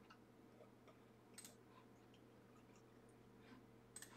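Near silence: a faint steady hum with a few soft computer-mouse clicks, a small pair about a second and a half in and a few more near the end.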